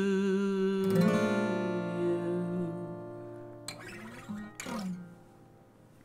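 Acoustic guitar closing a song: a held sung note ends about a second in as a final chord is strummed and left to ring out and fade away. Two short handling noises on the guitar follow near the end.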